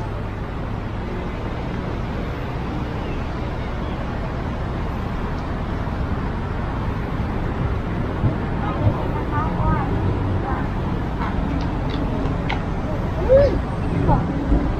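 Steady city traffic rumble from a busy road, with brief snatches of passers-by talking in the second half.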